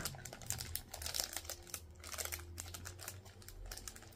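Small clear plastic packet being handled and pulled open by hand: an irregular run of soft crinkles and clicks.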